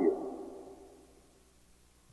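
A man's voice ends a word, and it dies away in the room's reverberation over about a second, followed by near silence.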